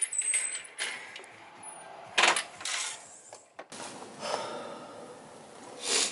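A few knocks, clatters and rustles as someone goes out through a cabin door, the loudest a little over two seconds in.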